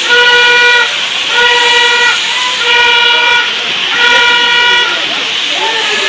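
A rushing waterfall under a repeated held pitched note, like a horn or a held musical note, that sounds for under a second about every second and a half, with a voice between the notes.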